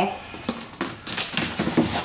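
Cardboard packaging sleeve being slid up and off a hard plastic carrying case, a series of short scraping rustles and light knocks.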